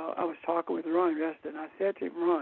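A person talking continuously, heard over a narrow, telephone-like line.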